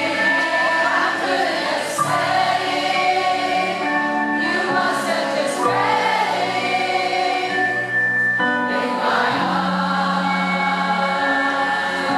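Live band music with long held sung notes over sustained chords, the notes changing about every two seconds.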